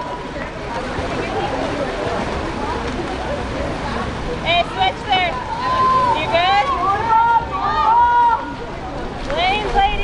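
Voices shouting and calling out, with high-pitched yells bunching from about halfway through and again near the end, over a steady background hiss.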